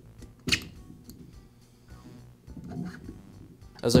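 A single sharp metallic click about half a second in, as the chainsaw's piston and connecting rod are slid into the cylinder, followed by a few softer handling sounds of the metal parts.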